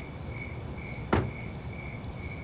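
Crickets chirping steadily, about two chirps a second, and a car door slammed shut with a single loud thud just over a second in. The door is a Mitsubishi saloon's.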